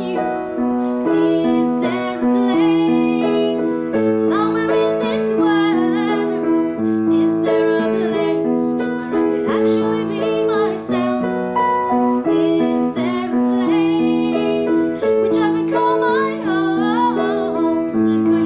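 A woman singing, accompanied by her own playing on an upright piano, which holds sustained chords under the voice while she sings in phrases.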